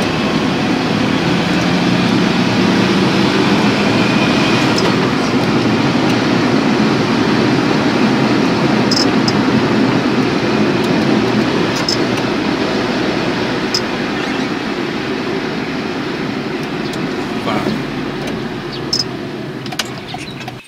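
Steady road and engine noise inside a moving car's cabin, with a few faint ticks.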